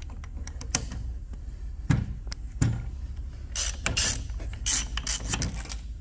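Hand socket ratchet clicking in short runs as bolts are run down into a hydraulic pump's auxiliary pad mount, with a few sharp metal knocks in the first half.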